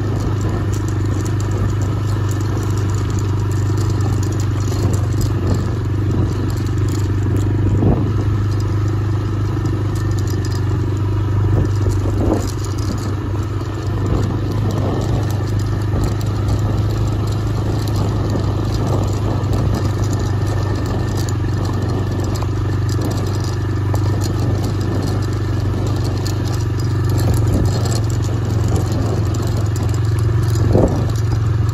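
TVS Raider 125 motorcycle's single-cylinder engine running at a steady cruise along a rough, stony dirt track, with scattered rattles and clatter from the bumps.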